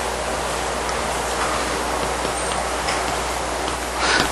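Steady, even hiss with a low hum underneath. This is recording noise from the lecture-room microphone system, raised during a pause in the talk.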